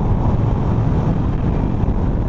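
Steady wind rush on the microphone over the low rumble of a Harley-Davidson Sportster Iron motorcycle cruising at road speed.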